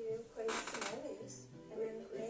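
A voice over music.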